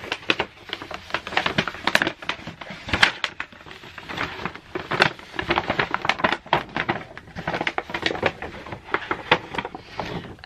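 Kraft-paper gift bag rustling and crinkling as it is opened out and a gift is packed into it by hand, a run of irregular sharp crackles.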